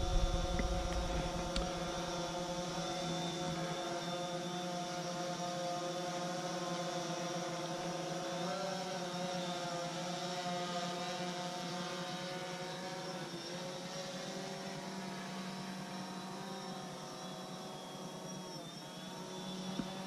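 DJI Phantom 4 quadcopter flying overhead, its four propellers giving a steady, many-toned buzz. The pitch wavers briefly around the middle, and the buzz grows a little fainter near the end.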